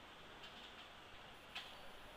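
Near silence with two faint computer mouse clicks, one about half a second in and a slightly louder one about a second and a half in.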